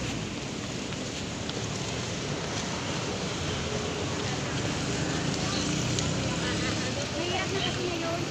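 Steady city street traffic noise at a road crossing, with cars running close by. Faint voices of passers-by come in near the end.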